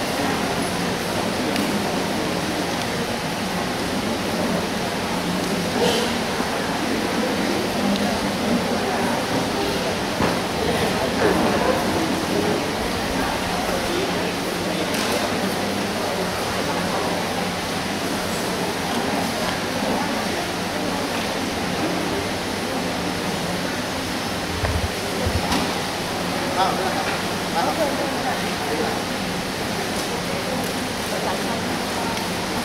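Indistinct voices of people talking in a hall over a steady hiss-like noise.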